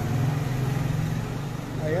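Handheld gas torch flame burning steadily against a steel wrench, a continuous low rumbling roar.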